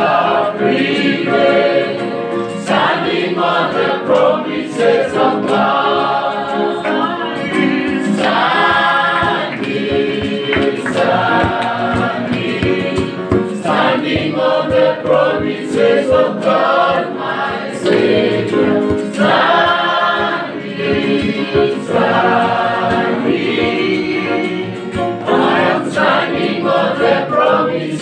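A choir singing gospel music.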